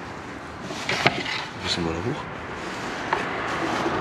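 A few light clicks and a short clatter of handling noise, about a second and three seconds in, over steady outdoor background hiss.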